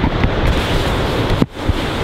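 Wind buffeting the microphone over the sound of surf, with a brief drop-out about one and a half seconds in.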